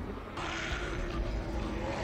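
TV drama soundtrack: a steady rushing noise with a low held tone beneath it, starting about a third of a second in.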